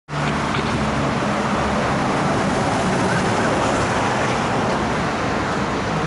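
Steady roadside traffic noise with a vehicle engine running close by, its low hum strongest in the first couple of seconds.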